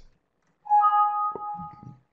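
Windows system alert chime, sounded when a 'file already exists, do you want to replace it?' warning box pops up. It is a two-note chime, the higher note coming just after the lower, ringing and fading over about a second. It is a little loud.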